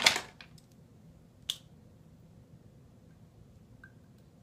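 Small makeup items being handled while searching for one: a brief rustling clatter at the start, then one sharp click about a second and a half in, with quiet between.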